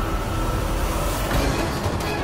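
Dramatic background score: sustained held tones over a dense low rumble.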